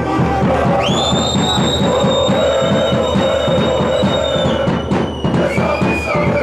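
Football supporters chanting over a drum beaten in a quick, steady rhythm. About a second in, a long shrill whistle cuts through and holds for some three seconds.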